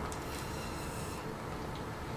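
Faint, airy hiss of breath blown through plastic drinking straws at grains of salt on a tabletop, dimming a little past halfway.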